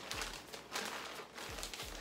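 Plastic shipping mailer and bag rustling and crinkling in irregular bursts as they are handled and pulled open.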